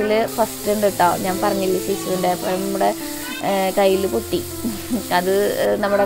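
Sliced shallots sizzling in hot oil in a kadai, stirred with a spatula, with background music playing over it.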